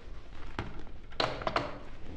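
A corded landline telephone handset being hung up on its cradle: a few short knocks and clunks.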